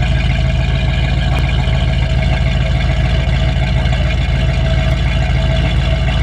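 Buick Nailhead 322 V8 running at a steady speed, a deep, even rumble with no revving.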